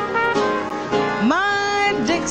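Small traditional jazz band (cornet, piano, guitar, string bass, bass saxophone and drums) playing live behind a woman singer, the melody scooping up into long held notes.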